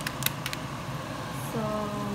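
A few sharp crackles of a plastic rice vermicelli bag being handled in the first half second, over a steady low hum.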